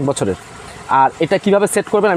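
Speech only: a man talking, with a brief pause about half a second in.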